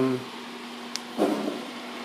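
A steady low hum of room noise with one sharp click about a second in, between a trailing word and a short hesitation sound from a voice.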